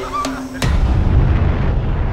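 A sudden deep boom about half a second in, followed by a loud low rumble that slowly fades. A held musical note cuts off as the boom hits.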